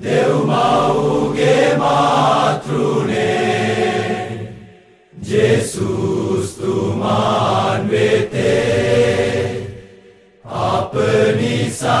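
A Sinhala Catholic hymn to St. Anne is sung in long phrases. The singing breaks off briefly twice, about five and about ten seconds in.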